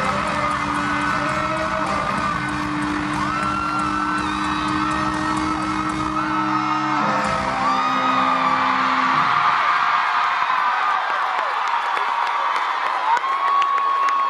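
Live band holding the final chord of a song, with a crowd screaming over it. The chord cuts off about seven seconds in, a last low note dies away about two seconds later, and after that only the high-pitched screaming of the crowd remains.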